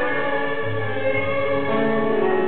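Tango orchestra music, with long held notes on the strings.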